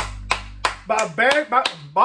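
One person clapping hands steadily, about three claps a second, while a low music note fades away. From about a second in, a man's voice joins in over the claps.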